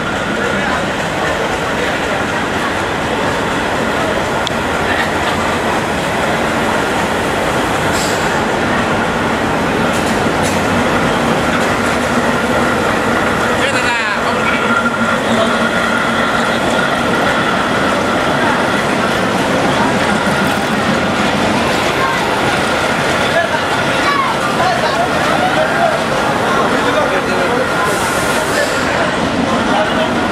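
A Bangladesh Railway diesel locomotive and its passenger coaches rolling slowly into a station, the engine running and the wheels rumbling on the rails. A steady high squeal runs under it, and the sound grows a little louder as the coaches pass.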